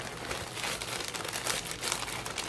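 Plastic packaging bag crinkling and rustling as it is handled, a dense run of small crackles.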